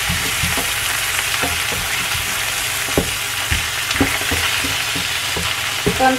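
Oil sizzling steadily in a non-stick frying pan around a half-fried grouper and chopped tomatoes, while a spatula stirs them and knocks against the pan several times at uneven intervals.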